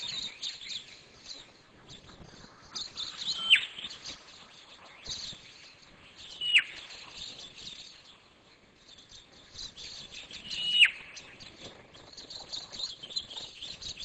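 Birds chirping and twittering, with a clear whistled call three times, each a short held high note that drops sharply in pitch at its end.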